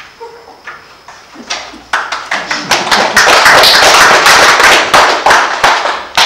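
Audience applauding. It begins with a few scattered claps, swells into full, dense applause about two seconds in, and thins out near the end.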